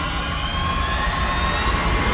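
Eerie soundtrack drone: a steady low rumble under a haze of noise, with thin high tones held and drifting slowly upward.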